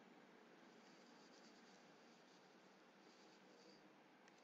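Near silence: faint room hiss, with faint scratching of a stylus writing on a tablet between about one second in and near the end.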